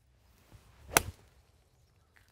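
A golf iron swung at a ball sitting on pine straw: a short swish, then one sharp crack of the club striking the ball about a second in.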